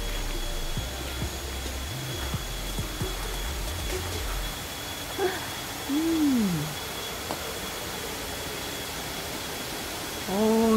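Steady rushing of a shallow forest stream running over rocks. A low rumble runs under it for the first four seconds or so, and a short falling tone comes about six seconds in.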